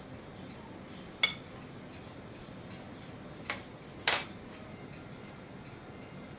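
A metal spoon clinking against a glass mixing bowl three times, about a second in, at three and a half seconds, and just after four seconds. The last clink is the loudest and rings briefly.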